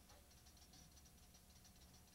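Drum kit played very softly: a quick run of faint, light stick taps.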